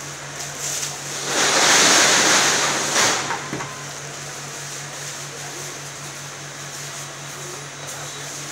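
Clear plastic packaging rustling and crinkling loudly for about two seconds as a selfie stick is pulled out of it, ending with a couple of small clicks, over a steady low hum.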